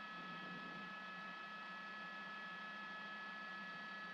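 Faint, steady helicopter cabin noise heard through the news crew's headset microphone: an even hiss with a few high, steady whining tones.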